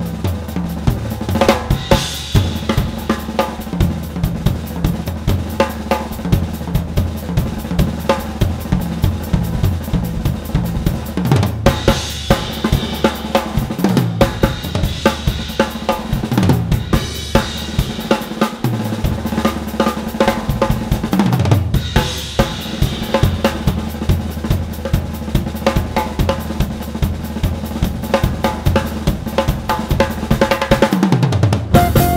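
Drum kit played busily and hard by a live jazz drummer: dense snare and bass drum strokes with hi-hat, and cymbal crashes several times.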